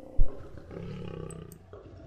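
A lion's low call: a short, loud low sound about a quarter of a second in, followed by a quieter low sound lasting about a second.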